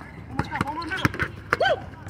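Pickup basketball on an outdoor asphalt court: several sharp thuds of play and players' short calls, the loudest call about one and a half seconds in.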